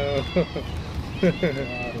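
A domestic cat meowing twice in long calls that fall slightly in pitch, the second starting a little past halfway.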